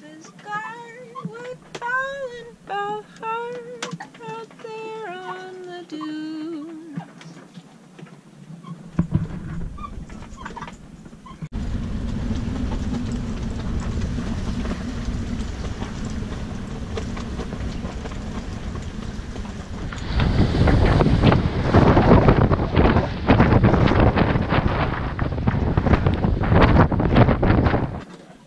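Strong gale wind across a sailboat's cockpit: a steady rushing, with the wind buffeting the microphone. It grows much louder and gustier about two-thirds of the way through.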